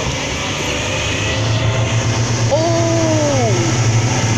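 Speedboat engine running steadily at cruising speed, a low drone over rushing wind and water, growing slightly louder. About two and a half seconds in, a drawn-out voice falls in pitch over about a second.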